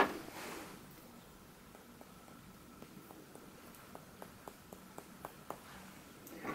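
Faint, light clicks of a paintbrush being handled over the painting table, irregular and about two a second, from a couple of seconds in until near the end.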